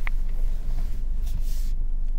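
Car engine idling, heard inside the cabin as a steady low rumble, with a short high click just at the start.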